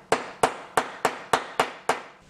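Ball-peen hammer striking a small piece of sheet metal on a steel table: seven sharp metallic strikes at an even pace of about three a second.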